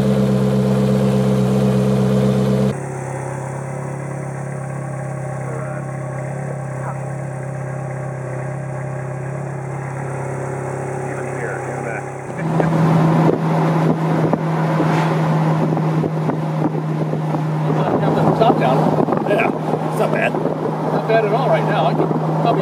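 Ferrari 430 Scuderia Spider 16M's 4.3-litre V8, fitted with a Capristo exhaust, idling steadily, with an abrupt drop to a quieter idle about three seconds in. From about twelve seconds in the car is moving, the engine holding a steady note under rushing wind and road noise.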